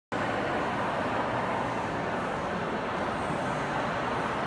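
Steady background din inside a large church, an even wash of noise with no distinct events.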